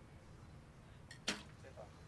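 A recurve bow shot: a sharp, single snap of the released string and limbs a little past halfway, just after a fainter click.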